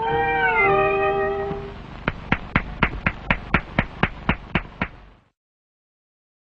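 The song's last note is sung high and held, stepping down to a lower held note before fading. Then comes a run of about a dozen evenly spaced clicks, about four a second, and the soundtrack cuts off suddenly.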